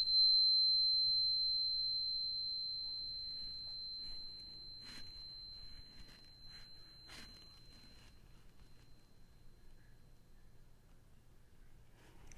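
A high-pitched angel tuning fork, just struck against another fork, ringing one clear, steady high tone that slowly fades away over about eight seconds.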